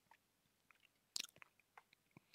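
Near silence, broken a little over a second in by a couple of faint mouth clicks.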